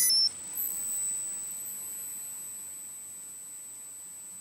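A short, high electronic beep right at the start, cutting off abruptly: the browser's chime that speech recognition has started listening. It is followed by a faint steady high-pitched whine over hiss.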